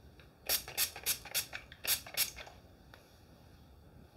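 Hairspray bottle spritzed onto hair in six quick short hisses, about three a second with a brief pause in the middle.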